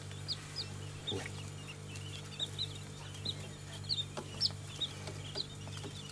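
Newly hatched chicks, mostly Japanese quail, peeping in short, high chirps, about two a second, scattered and uneven, with a faint steady low hum underneath.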